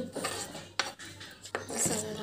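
Metal utensil clinking against a metal cooking pan as chopped onion is tipped onto the sprouts, with a few sharp clinks about three-quarters of a second and a second and a half in.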